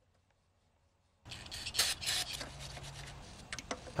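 Metal parts of a Puch Maxi E50 moped engine's disassembled top end rubbing and scraping as they are worked by hand, starting about a second in, with a few sharp clicks near the end.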